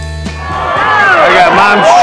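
Rock song with a steady drum beat fading out about half a second in, giving way to a crowd of racetrack spectators shouting and cheering a horse race, many voices overlapping and growing louder.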